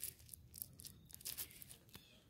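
A few faint, short crackles and rustles, scattered through the two seconds.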